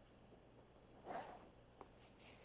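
Near silence with room tone. A faint, brief rustle comes about a second in, and a single light click follows near the end.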